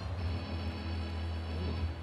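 Ice hockey arena ambience: steady crowd noise with music playing under it.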